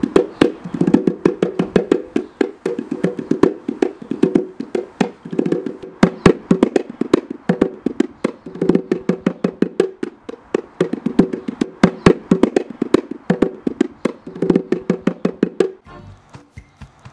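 A djembe played with the hands in rapid, irregular strikes, with a steady low tone sounding beneath the strikes in stretches of a second or two. The playing stops just before the end.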